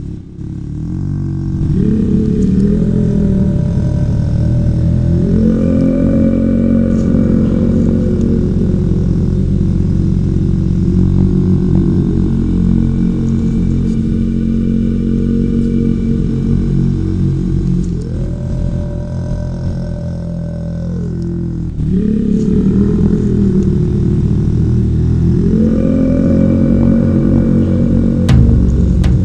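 Low, dense drone of ambient meditation music that holds steady and slides up and down in pitch several times.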